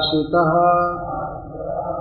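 A man's voice chanting a Sanskrit verse in a sung tone: a short rising note, then one long held note of over a second.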